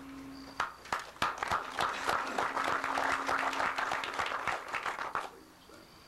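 Audience applauding: a few scattered claps about half a second in build into full applause, which dies away about five seconds in.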